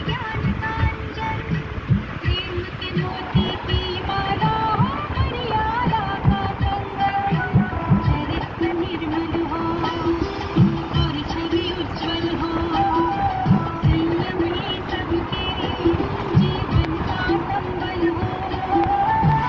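Music playing: a melody of held and gliding notes over irregular low thuds.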